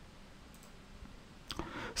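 Low room tone with a few faint clicks from a computer mouse, one about a second in and more near the end, as the slide is advanced. Speech starts again just at the close.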